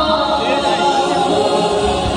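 Singing from a jatra stage show, with long held notes and more than one voice sounding together.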